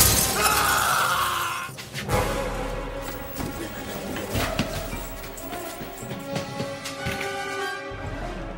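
Window glass shattering as a body crashes through it: a loud burst of breaking glass in about the first two seconds. Film score music plays under it and carries on afterwards.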